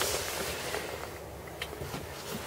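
Faint rustling hiss of the camera being handled, fading over the first second, then a couple of light clicks near the end.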